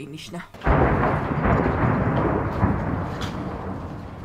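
An explosion: a sudden boom about half a second in, followed by a long rolling rumble that slowly fades.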